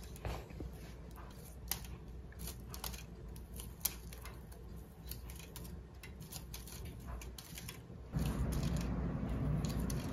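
Hand garden pruners snipping small hydrangea florets from the stem: a string of short, crisp cuts at irregular intervals. A steady low rumble comes in about eight seconds in.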